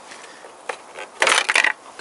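Plastic cover of a Toyota Corolla's engine-bay fuse box being unclipped and lifted off: a few light clicks, then a louder plastic clatter about a second and a quarter in, lasting about half a second.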